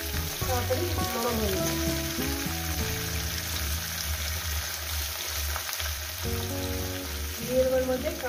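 Vegetables sizzling steadily in hot oil in a steel kadai as cut flat beans are tipped in, under background music with a melody.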